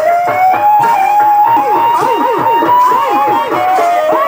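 Chhau dance music: a shehnai-type reed pipe holds a long, wavering melody over fast, steady drumming on barrel drums.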